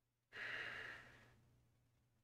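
A person's sigh: one breathy exhale that starts suddenly and trails off over about a second.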